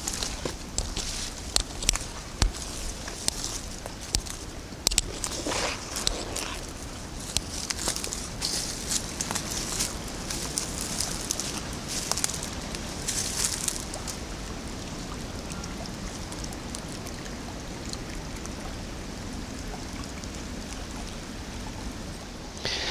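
Footsteps on fallen leaves along a forest path, many short crackles and crunches through the first dozen seconds or so, then a steady faint outdoor hiss.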